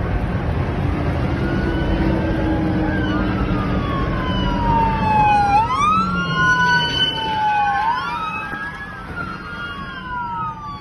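Several emergency-vehicle sirens wailing at once, their pitches falling slowly and then jumping back up. More sirens join about halfway through, over the steady road rumble of a moving car.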